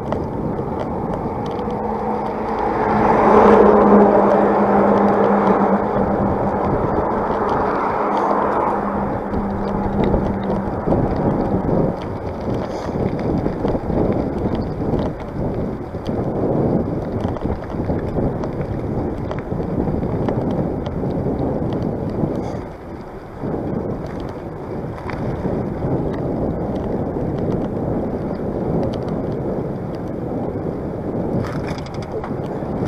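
Wind rushing over the microphone of a bicycle-mounted camera, with tyre and road noise from the ride. A motor vehicle passes close by about three seconds in: its hum swells, drops slightly in pitch as it goes by, and fades over several seconds.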